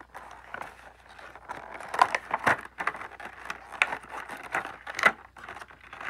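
Cardboard toy packaging being torn open by hand: a run of irregular ripping and crackling tears, sharpest about two seconds in and again near the end.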